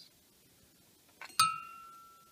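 An empty brass 20 mm Hispano cartridge case clinks once, about one and a half seconds in, as it is knocked while being lifted from a row of cases, then rings with a clear metallic tone that fades over about a second.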